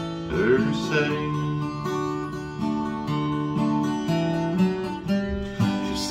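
Capoed steel-string acoustic guitar strummed in a country rhythm, its chords ringing and changing about once a second.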